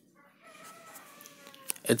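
A faint, drawn-out bird call in the background, its pitch falling slowly, followed by a short click and a man's voice starting right at the end.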